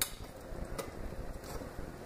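Clicks from a solar temperature differential controller being switched from off to auto to start the circulation pumps: a sharp click at the start, then a fainter one under a second later, over a low steady background hum.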